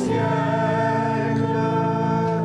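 Mixed church choir of men and women singing. A new chord begins right at the start and is held in long, steady notes.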